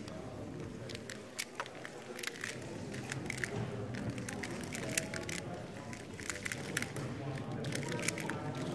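A YJ MGC magnetic Square-1 puzzle being turned at speed: quick, irregular clicks and clacks of its layers snapping into place, starting about a second in and running on in rapid bursts.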